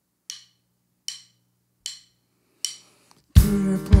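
Drumsticks clicked together four times, evenly a little under a second apart, counting the band in. The full rock band comes in loudly about three and a half seconds in, led by the kick drum.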